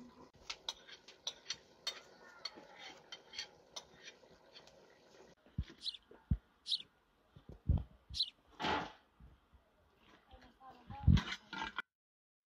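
Light clinks and knocks of metal utensils against metal cookware, many of them close together in the first half. Later come a few separate short vocal sounds, the loudest a half-second one about nine seconds in.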